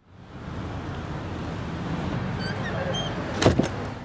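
Steady outdoor background noise with a few faint, short chirps near the middle, then a brief cluster of knocks and clicks about three and a half seconds in as a front door is opened.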